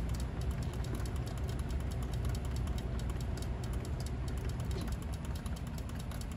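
Steritest Symbio peristaltic pump running steadily, a low hum with a fast, fine rhythmic ripple from its rollers drawing media through the tubing.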